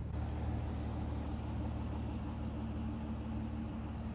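Aston Martin V12 Vantage S's naturally aspirated 6.0-litre V12 idling, a steady low tone that does not rise or fall.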